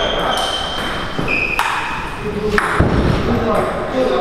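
Table tennis ball being struck by rackets and bouncing on the table during a rally: a few sharp clicks, several followed by brief ringing pings, in a reverberant hall.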